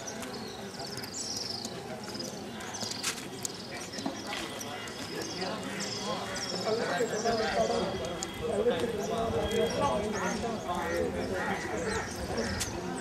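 Footsteps on stone paving, with repeated high chirping of birds about twice a second and indistinct voices that grow louder from about halfway.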